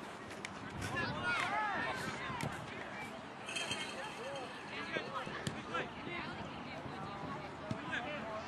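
Distant shouts and calls of players and sideline spectators across a soccer field, with a few faint knocks.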